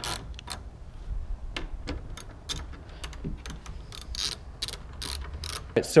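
Ratcheting socket wrench clicking as it snugs down a bolt holding the camper van's floor panel: a run of short, sharp clicks, a few each second, in uneven bunches with the strokes of the handle.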